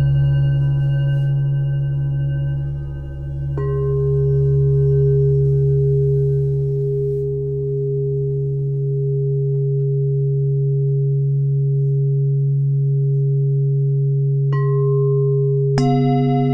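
Meditation music of singing-bowl-like ringing tones over a steady low hum. A new tone is struck about three and a half seconds in and twice more near the end, and each one rings on.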